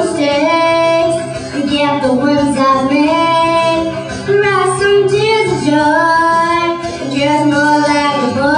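A young girl singing a pop song into a handheld microphone, in long held notes that bend in pitch, with low steady musical accompaniment underneath.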